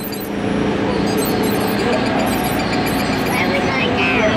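Steady ride-vehicle running noise inside the car of the Test Track dark ride, with indistinct voices in the background.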